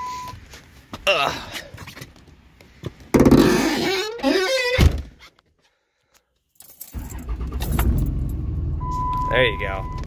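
Cummins turbo-diesel in a Ram 2500 cranked and fired on a cold start after the intake grid heater cycle, beginning about three seconds in, then idling steadily from about seven seconds. A dashboard chime sounds near the end.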